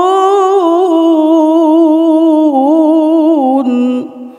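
A Qur'an reciter's voice in melodic tilawah holds one long ornamented vowel with wavering turns in pitch. The note steps lower shortly before the end and then breaks off.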